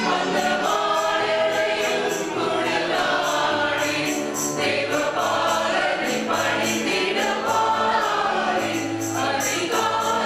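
Mixed choir of men and women singing a Tamil Christmas song together, over instrumental accompaniment with a steady bass line and a regular high ticking beat.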